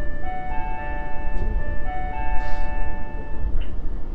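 Electronic chime in the train: two held chords of several steady tones, the second beginning about halfway and stopping a little before the end, of the kind that precedes a passenger announcement. It sounds here as the earthquake stop drill ends. A steady low rumble of the stationary train runs beneath it.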